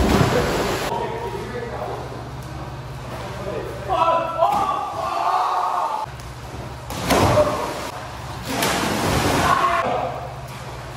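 People jumping into an indoor pool: a splash at the start and two more near the end, in a large, reverberant pool hall, with shouting voices between them.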